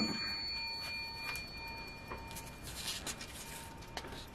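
Faint rustling and light taps of a scratch-off ticket and a coin being handled on a wooden table. A coin's thin, high ring dies away in the first second or so.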